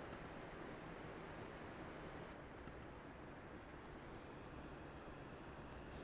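Faint, steady hiss of room tone and microphone noise, with no distinct sound events.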